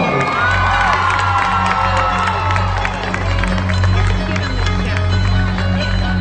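Crowd cheering and screaming, with one long high scream over the first couple of seconds, over loud music with a heavy bass line that comes in just after the start.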